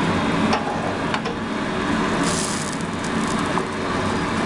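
Steady background hum over an omelette in a steel frying pan, with two light clicks of a metal spatula against the pan about half a second and a second in, and a brief brighter hiss about two seconds in.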